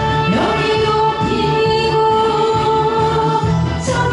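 A woman singing a Korean trot song over a backing track, sliding up early on into one long held note that she sustains almost to the end.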